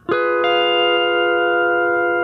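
Pedal steel guitar sounding an F diminished chord with the bar moved up to the octave: the chord is picked just after the start, a few more notes join about half a second in, and it rings on steadily.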